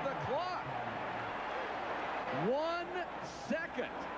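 Basketball arena crowd noise, with voices calling out over the din; one voice rises and falls loudly about two and a half seconds in.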